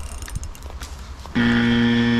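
A loud, steady buzzing tone held at one low pitch for about a second, starting and stopping abruptly a little past halfway.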